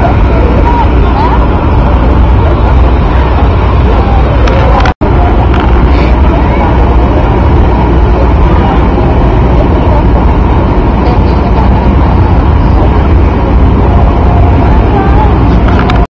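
Steady loud low rumble with faint distant voices in the background. The sound cuts out for an instant about five seconds in.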